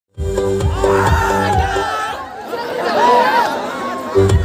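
Live band playing a song with a steady bass-and-drum beat that drops out about halfway, while voices from the crowd shout and cheer over the music.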